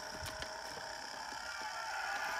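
A couple of faint clicks from a plastic action figure being handled, over a steady low background hum.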